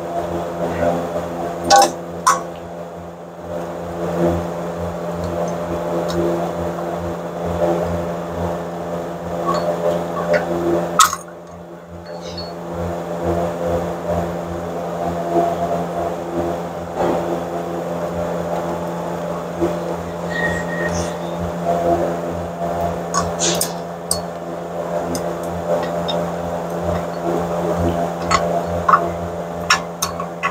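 A steady low machine hum, with scattered metallic clicks and clinks as parking-brake shoes and their springs are handled and fitted onto a car's rear brake backing plate around the hub.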